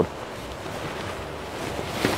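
Silk sarees rustling as they are unfolded and handled: a soft, steady rustle, growing a little louder near the end.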